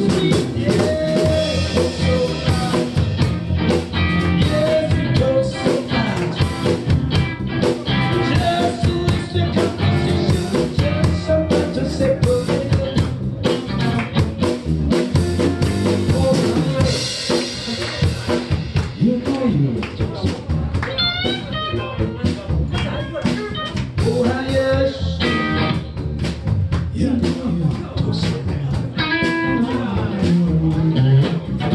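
Live blues band playing an instrumental passage: electric guitar and electric bass over a steady drum-kit beat.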